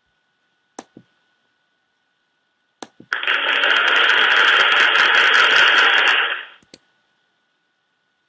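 A few mouse clicks, then a canned applause sound effect plays for about three and a half seconds as dense, crackly clapping before stopping. It is the slideshow's feedback sound for a correct answer.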